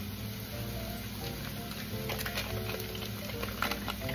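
Crumbled pork sausage sizzling as it browns in a frying pan, under background music with held notes.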